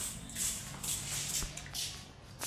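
Shuffling footsteps and rustling, about two soft scuffs a second, with a few faint clicks.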